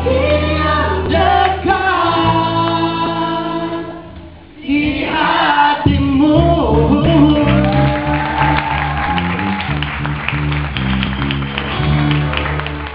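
A small group singing an Indonesian worship song with instrumental backing. The music dips briefly about four seconds in, then the singing picks up again.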